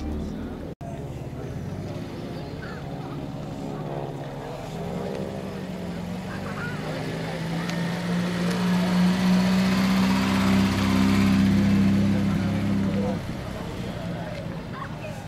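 Peugeot 304 cabriolet's four-cylinder engine running as the car drives slowly past at low speed, growing louder over several seconds and then dropping off abruptly near the end.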